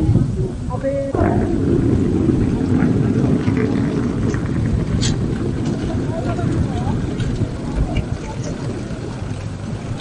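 Outdoor airport terminal ambience: a steady low rumble of traffic or engines that comes up about a second in, with background voices and small scattered clatters.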